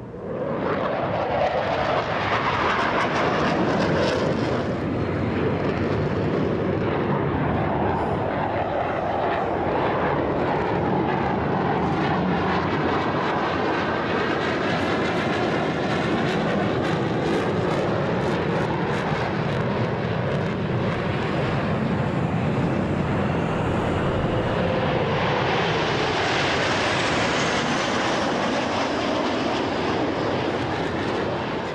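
Jet aircraft flying an aerobatic display, its engine noise loud and continuous. The sound swells and fades as it passes, with a sweeping, phasing quality in the middle as it flies by.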